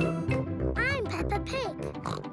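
Bright children's cartoon theme music, then a young girl's cartoon voice and a pig's snort about a second in.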